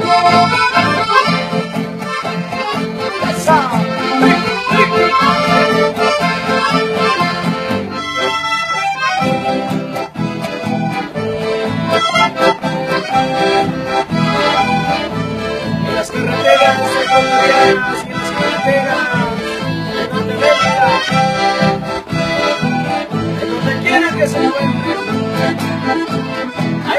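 Accordion-led traditional dance music with a steady beat.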